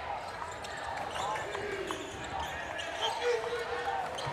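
A basketball being dribbled on a hardwood court, the bounces coming at an uneven pace over a steady murmur of voices in a large gym.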